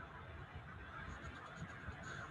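Quiet room tone: faint, steady background noise with a few soft, faint ticks in the second half.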